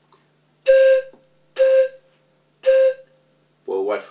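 A small hand-held one-note whistle blown three times, short notes about a second apart, all on the same pitch, each with a breathy start. This is the single-pitch whistle playing of Central African pygmy music. A man's voice comes in near the end.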